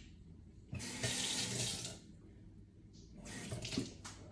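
Water running from a tap for about a second to wet a paper towel, then a shorter, quieter run of water near the end.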